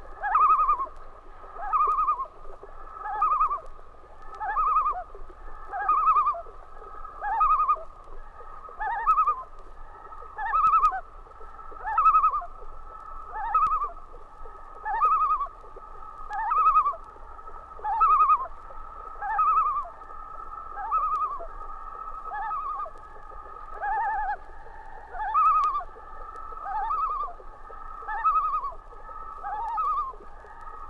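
Common loons calling at night on a lake: several birds giving short, pitched, overlapping calls in a steady repeated run, about one a second.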